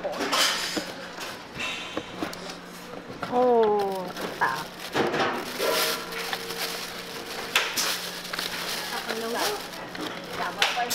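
Young coconut flesh being scraped out with a hand tool, a plastic bag rustling as a coconut is pushed into it, and a short voice call near the middle.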